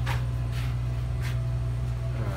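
Steady low hum of running heating equipment in a basement, with a few soft knocks about half a second apart.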